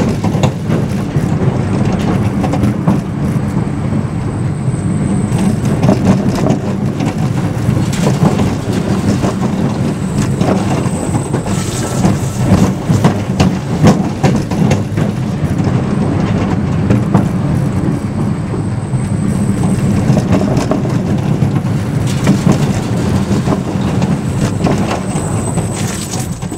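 A small steel roller coaster's train running along its track, heard from on board: a steady, loud wheel rumble with constant clatter and rattling.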